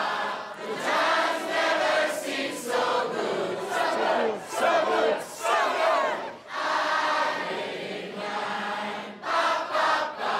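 Bar crowd, many voices shouting and singing together at once.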